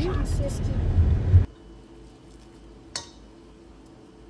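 A loud low rumble that cuts off abruptly about one and a half seconds in, leaving a faint steady hum. Near the end comes a single light clink against a ceramic bowl as shredded chicken is laid into it.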